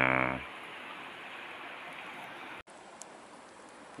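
Steady rushing of a fast-flowing shallow river over rocks. About two and a half seconds in it cuts abruptly to a quieter stretch of the same steady flow.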